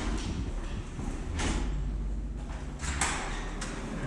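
Footsteps and rustling of a handheld camera carried along a corridor, with two louder swishes about a second and a half in and near the end, over a low steady hum.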